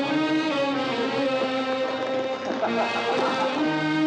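Film background score: music with long held notes that shift in pitch every second or so.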